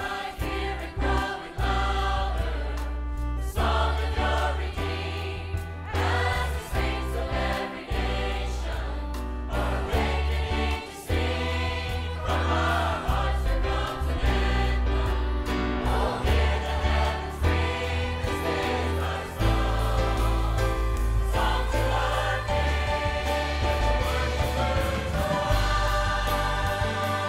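A choir and congregation singing a gospel hymn together with a live band of piano, electric bass, acoustic guitars and drums, with a prominent bass line.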